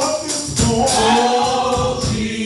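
Live gospel music: a male lead singer and a group of voices singing over a band with a steady beat.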